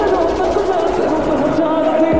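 A song: a singer's voice carrying a Punjabi-language melody line over steady backing music.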